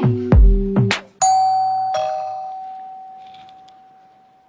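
A heavy bass music beat for about a second, then a two-note doorbell-style chime: a bright ding, then a lower dong, ringing out and slowly fading over about three seconds.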